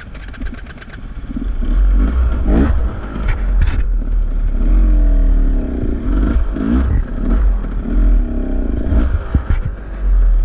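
Dirt bike engine running at a standstill, then revved up and down repeatedly from about a second in, with a couple of brief rattles early on.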